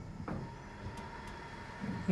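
Quiet background ambience: a faint low rumble with a faint steady high tone.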